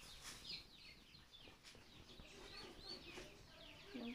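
Faint chirping of birds: many short, falling chirps repeating and overlapping throughout.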